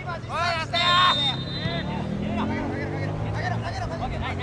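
Players' voices shouting calls across a soccer pitch, loudest about a second in. A vehicle engine drones underneath through the second half, its pitch slowly sliding.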